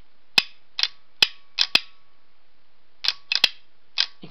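EV main contactor (solenoid-operated high-current switch) clacking as a 9-volt battery is touched to its coil: the solenoid snaps the copper contact plate up to bridge the main terminals and lets it drop back. Sharp clicks in bunches through the first two seconds, then again near the end.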